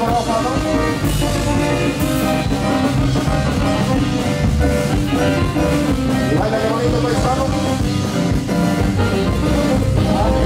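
Live band playing dance music, an electronic keyboard holding sustained notes over drums and percussion.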